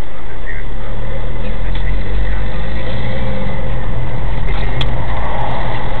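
Car engine pulling away from a standstill and accelerating, heard from inside the cabin as a low rumble over road noise. A few sharp clicks or rattles come near the end.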